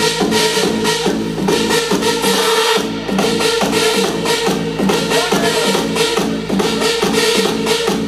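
House music played loud over a club sound system, with a steady drum beat and a repeating bass line.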